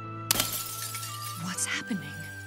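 Animated film soundtrack: sustained music with a sudden shattering crash about a third of a second in, followed by scattered sharp, glassy clinks.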